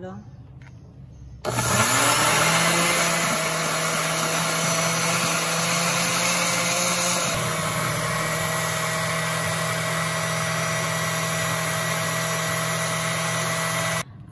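Countertop blender with a glass jar switched on about a second and a half in, its motor spinning up and then running steadily at high speed as it purées cilantro, garlic, onion, oil and mayonnaise into a creamy dressing. Its sound eases slightly about seven seconds in.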